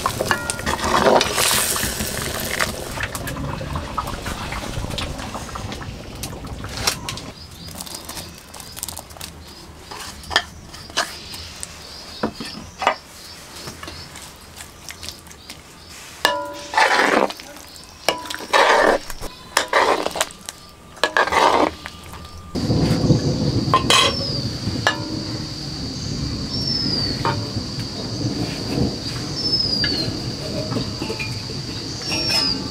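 Fish curry bubbling in an iron wok over a wood fire, with a metal ladle stirring, scraping and clinking against the pan; a run of louder knocks comes in the middle. After a change of scene there is a steady high-pitched tone with a few short falling chirps over a low rumble.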